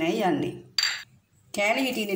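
One sharp clink of a small ceramic dish against a glass bowl about a second in, ringing briefly, between stretches of a woman's talking.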